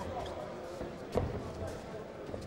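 Voices shouting in a boxing hall over a low murmur, with one sharp thump a little over a second in, from the fight in the ring.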